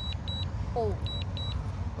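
Remote controller of a DJI Mavic Air 2 beeping short high double beeps about once a second, the alert that the drone is in automatic landing. A steady low rumble runs underneath.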